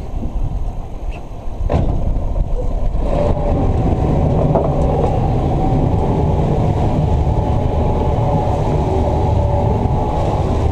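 Honda outboard motors running, the engine note rising and then holding steady a few seconds in as the boat is driven. A single sharp knock sounds just before the rise.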